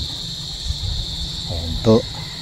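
Insects calling in a steady, unbroken high-pitched drone.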